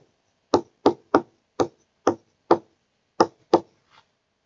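Stylus tapping on a tablet screen during handwriting: about eight short, sharp taps at uneven spacing.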